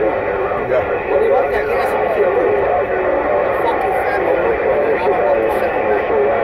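President Lincoln II+ radio's loudspeaker putting out steady static, with faint, unintelligible voices of distant stations mixed into the noise.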